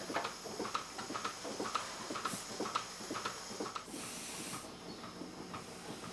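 Robotic milking machine at work under a cow as it attaches the teat cups: irregular light mechanical clicks and ticks, with a short hiss about two seconds in and a longer one around four seconds.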